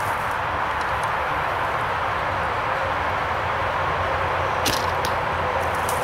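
A 62-inch traditional bow being shot: one sharp snap of the string on release about three-quarters of the way in, followed by a couple of fainter clicks. A steady background hiss runs throughout.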